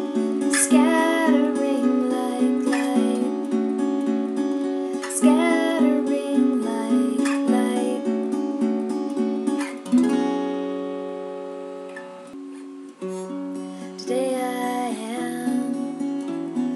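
Acoustic guitar playing chords in a slow song, with a woman's voice coming in for a few short sung phrases. About ten seconds in, one chord is struck and left to ring out for a few seconds before the playing picks up again.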